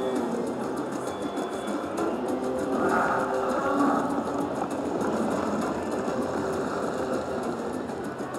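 Raging Rhino Rampage video slot machine playing its free-spin bonus music and reel-spin sound effects as the reels spin through a free game, with a brief swell about three seconds in.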